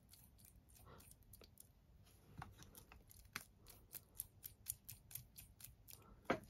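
Faint, irregular light clicks and ticks of hands handling the metal chassis and wheels of a 5-inch gauge model steam locomotive, sparse at first and more frequent in the second half.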